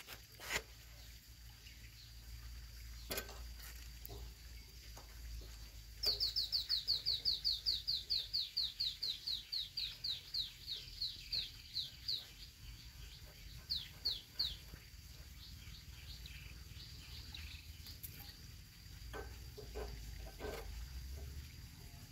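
A bird calls in a fast run of short, high, descending chirps, about four a second, that slows and thins out, then gives two or three more chirps a little later. A few light metal clicks come from the rear drum-brake rod's adjuster nut being turned by hand, a cluster of them near the end.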